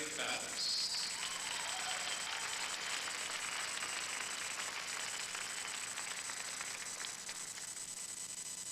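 Audience applauding, with a voice heard briefly at the start; the applause thins near the end.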